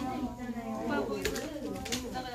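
Indistinct voices of students talking in a small room, with a low hum-like, cooing voice among them.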